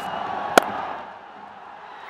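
Cricket bat striking the ball once, a sharp crack about half a second in, over crowd noise from the stands that fades soon after.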